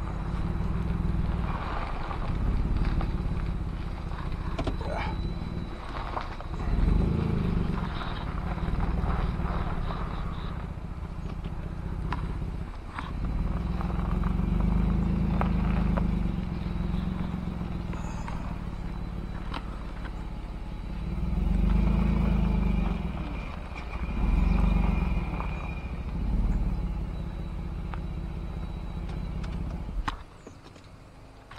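Car engine running while the car is driven slowly a short distance, a steady low rumble that swells several times as it pulls.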